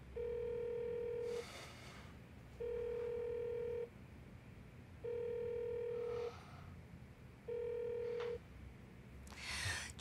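Telephone ringback tone: four steady beeps of about a second each, evenly spaced, as the call rings without being answered.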